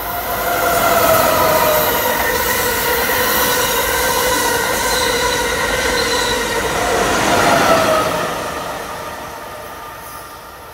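Amtrak Acela Express high-speed trainset passing close by at speed: a loud rush of wheel and rail noise with several high whining tones. The whine slides down in pitch as the rear power car goes by, and the sound fades over the last couple of seconds as the train moves away.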